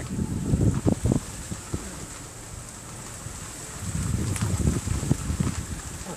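Wind buffeting the microphone of a phone held at the open window of a moving 4WD, over the rumble of the vehicle on a dirt track. The buffeting comes in gusts, in the first second and again about four to five and a half seconds in.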